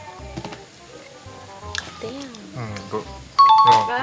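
A loud two-note chime sound effect, a higher note then a lower one like a doorbell's ding-dong, rings out suddenly near the end and runs into music. Before it there are only faint voices.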